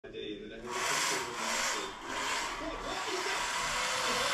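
Drift Art 3 RC drift car's hard tyres sliding across a plank floor: a loud hissing scrub that starts about half a second in and surges and eases in waves as the car drifts.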